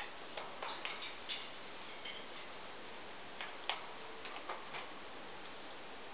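Scattered light clicks and taps in small clusters as a blue-and-gold macaw moves about on its metal cage top, over a quiet room background.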